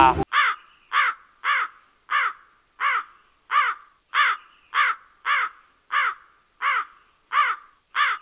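Crow cawing sound effect: a steady run of about a dozen identical caws, roughly three every two seconds, over otherwise dead silence.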